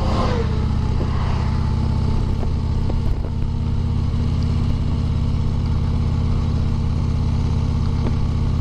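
Harley-Davidson V-twin touring motorcycle cruising steadily at road speed, its engine note mixed with wind rush. An oncoming truck passes in the first moment, with a brief falling tone as it goes by.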